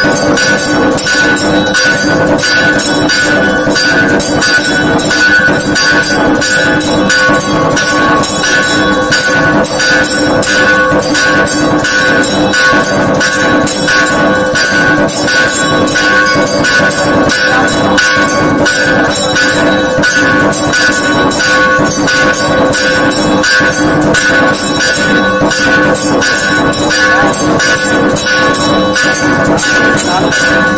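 Loud temple ritual sound of bells rung rapidly and continuously with a fast, even beat of strikes, their steady ringing tones held unbroken throughout.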